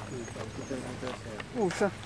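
Indistinct chatter of men's voices, with a louder word or two near the end.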